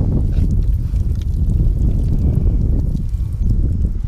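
Bare hands digging and scooping through wet tidal mud, heard under a loud, steady low rumble of wind on the microphone.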